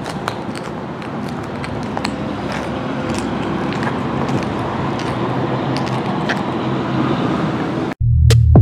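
1952 Ford pickup's fuel-injected Chevrolet V6, swapped in from a 2001 S10, idling steadily and growing slightly louder, with a few light clicks over it. It cuts off suddenly at the end.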